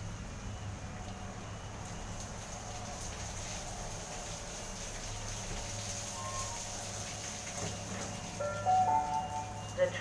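Sydney Trains S set electric train rolling into the platform and slowing to a stop, with a steady low hum under the hiss of rain. Near the end a short chime of steady electronic tones sounds, ahead of a recorded platform announcement.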